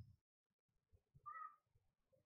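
Near silence: room tone, with one faint, short pitched call a little past a second in.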